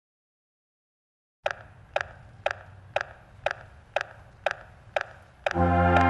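Metronome clicking a steady beat at about two clicks a second, counting in a marching brass horn line. Near the end the horn line enters together on a loud sustained chord, the first long tone of a warm-up exercise.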